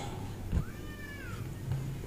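A faint, high-pitched cry that rises then falls in pitch, lasting just under a second, over low background noise.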